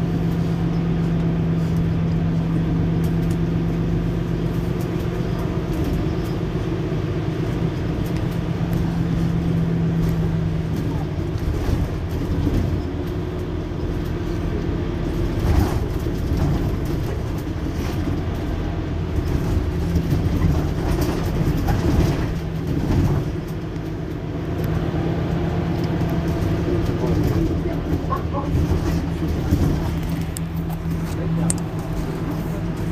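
Mercedes-Benz Citaro C2 Hybrid city bus's diesel engine idling while standing at a stop: a steady low rumble with a held hum that drops out about a third of the way in and comes back in the last third. A few sharp clicks come around the middle.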